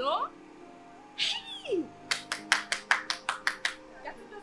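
A woman's excited, wordless vocal exclamations with swooping pitch over a background music score, followed about halfway through by a quick run of about eight sharp smacks, several a second.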